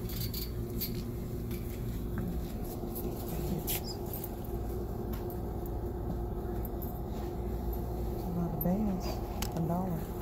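Shop ambience: a steady background hum with scattered light clicks, and a faint distant voice rising and falling, most clearly near the end.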